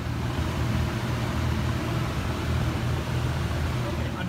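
Steady low rumble of urban outdoor background noise, such as street traffic.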